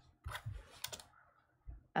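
Knitting needles clicking faintly as stitches are worked, a couple of short sharp clicks about a second in, with soft handling knocks.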